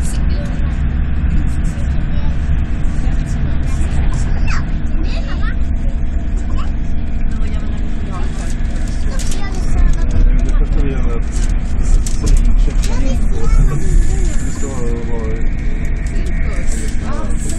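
Steady rumble of an SJ X2000 high-speed train running at speed, heard from inside the carriage. Indistinct voices talk in the background.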